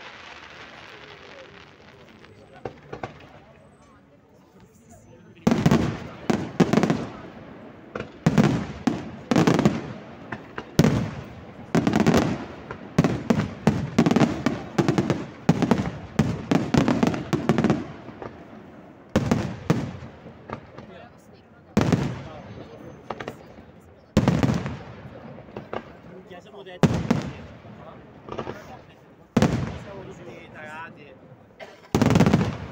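Aerial firework shells bursting: a few faint pops at first, then from about five seconds in a dense volley of loud bangs in quick succession, thinning to single heavy bangs every two or three seconds near the end.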